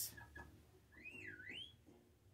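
Near silence with a faint low hum, broken about a second in by one faint, short whistle that swoops up, down and up again in pitch.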